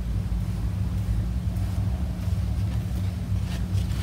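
A steady low hum and rumble, with a faint soft rustle now and then in the second half.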